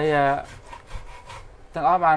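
Faint scraping and rubbing of bamboo being worked by hand, between a short burst of a man's voice at the start and more speech near the end.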